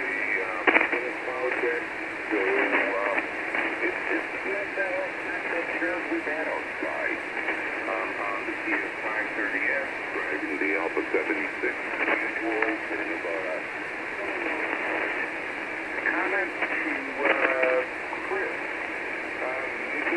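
A voice heard over single-sideband on the 40-metre amateur band through a transceiver's speaker: thin, telephone-narrow speech over a steady hiss of band noise.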